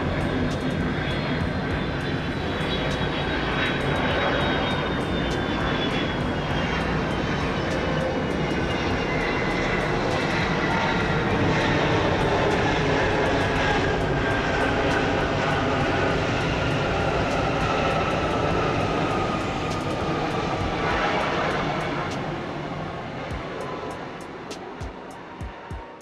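Boeing 757 jet airliner touching down and rolling out, its engines running loud with a thin whine that slowly falls in pitch; the sound fades away near the end.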